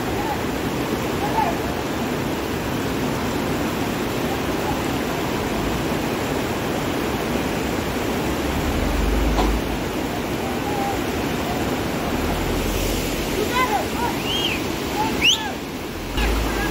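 Muddy floodwater rushing steadily over a boulder-choked, washed-out mountain road, with scattered distant shouts that come more often near the end.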